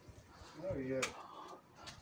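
A brief, faint voice, a single short utterance rising and then falling in pitch, followed by a sharp click about a second in.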